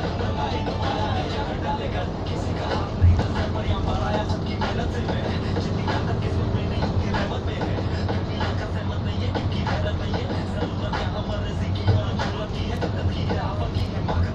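Steady rumble and road noise from inside a moving vehicle, with music and a singing voice playing underneath. Two brief thumps come, one about three seconds in and one near the end.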